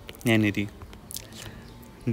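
A voice saying one drawn-out syllable about a quarter second in, then faint ticks and a short scratch of a stylus writing on a tablet screen.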